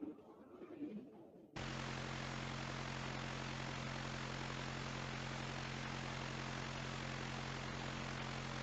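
Coaxial rotor with double-swept blades spinning: a steady whirring rush with a low two-tone hum, starting about a second and a half in. The double sweep spreads out the blade-crossover overlap between the upper and lower rotors, and the speaker calls the result quieter and softer than the straight-bladed rotor.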